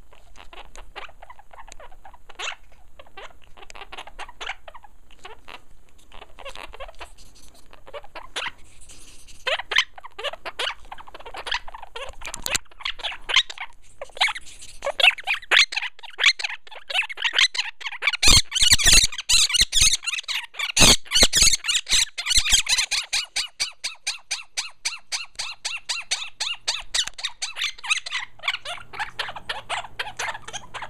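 Two Quaker parrots (monk parakeets) giving rapid, repeated short chirps and squawks: alarm calls from birds upset by a camera held close. The calls build to a dense, loud stretch in the middle, with a few sharp knocks among them.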